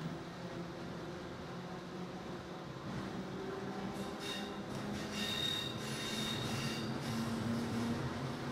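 Berlin S-Bahn train running on the elevated Stadtbahn, heard from inside the carriage: a steady rumble of wheels on track that grows a little louder partway through. About halfway in, a high-pitched wheel squeal joins it and carries on to the end.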